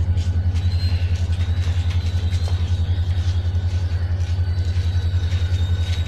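Steady low rumble of an idling engine, pulsing rapidly and evenly, with a faint high steady whine above it.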